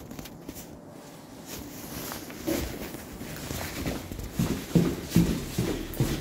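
Footsteps on concrete stairs in an echoing stairwell: a faint first half, then a run of evenly paced steps from about halfway in, a little over two a second.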